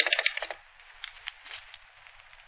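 Telephone sound effect: a rapid flurry of clicks from the receiver and hook in the first half second, then a few scattered faint clicks over recording hiss. The line is dead, and the operator does not answer.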